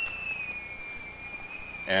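A faint, steady high-pitched whine that sinks slightly in pitch during a pause in a man's speech; his voice starts again right at the end.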